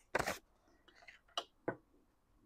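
Faint handling of an eight-sided die in a felt-lined dice tray: a short soft scuff near the start, then two light clicks a moment apart as the die is picked up out of the tray.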